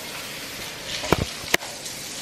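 A few sharp clicks or knocks over a steady background hiss: a quick pair about a second in, then a single one about half a second later.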